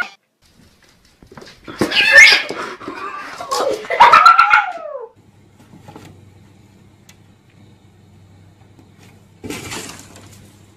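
A cat making loud, rough calls for about four seconds, the last one sliding down in pitch. Then a faint low hum, and a short noisy burst near the end.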